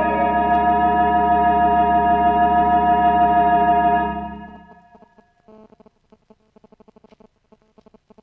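Artisan electronic theatre organ sustaining a full final chord with a wavering tremulant, the chord dying away about four seconds in.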